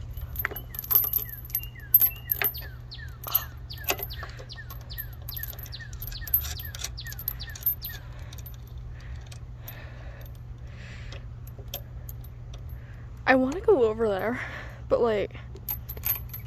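Steel swing chains clinking and jangling as they are handled, with a few sharp metallic clicks, mostly in the first few seconds.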